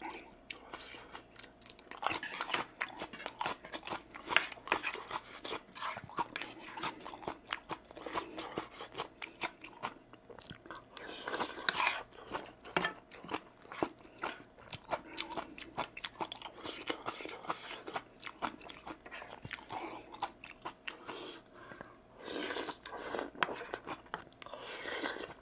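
Close-miked eating: a man chewing and slurping mouthfuls of kimchi ramen with rice and crunching on onion kimchi, with many small mouth clicks and a few longer slurps.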